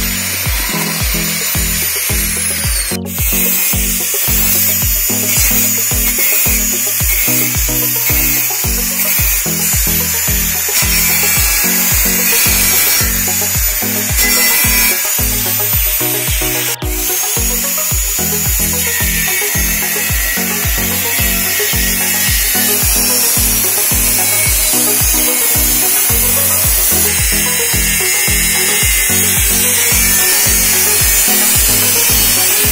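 Background music with a steady beat, over an electric angle grinder cutting into a metal beer keg, its high grinding noise running beneath the music and breaking off abruptly twice.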